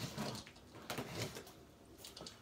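Cardboard shipping box being pulled open by hand: a few short scraping, rustling noises of cardboard flaps and tape.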